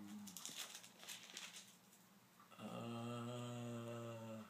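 Paper Bible pages rustling as they are leafed through, then an elderly man's long, steady, hesitant "uhhh" held for about two seconds while he searches for the verse.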